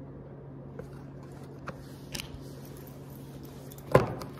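A steady low hum with a few faint taps of tarot cards being handled, then one sharper click near the end as the deck is picked up to shuffle.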